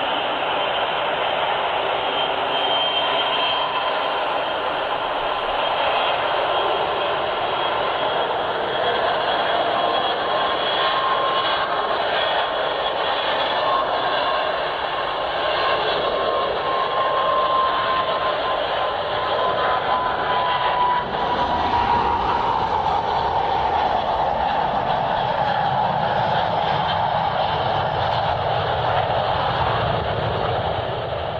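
Jet aircraft engine noise: a steady roar with a thin whine that slowly falls in pitch, and a deeper rumble that swells about two-thirds of the way through.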